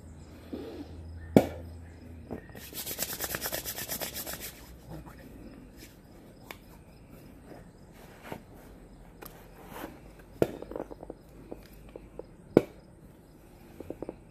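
Handling sounds of a hand-drill fire kit being set up on concrete. A sharp tap about a second in is followed by a rapid rasping scrape lasting about two seconds, then a few scattered light taps as the spindle is stood on the wooden hearth board.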